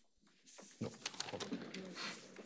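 Clicks, knocks and rustling of handling at a lectern and its laptop, picked up close by the lectern microphone, with low muffled voices in between.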